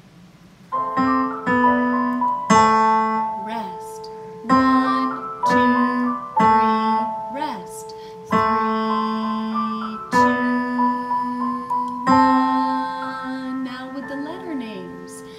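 Digital piano on a grand piano sound: a left hand plays the descending C–B–A beginner pattern over a recorded accompaniment. It starts about a second in, with a new phrase about every two seconds.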